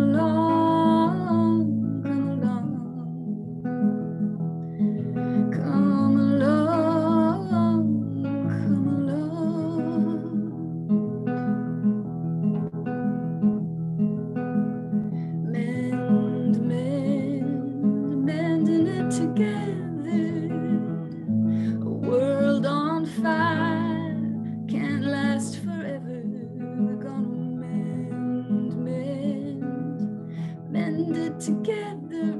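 A woman singing a simple three-chord folk-style song to her own strummed acoustic guitar, in phrases with short guitar-only gaps between them, heard over a video-call connection.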